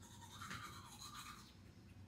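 Manual toothbrush scrubbing teeth, faint quick back-and-forth strokes that die away about a second and a half in.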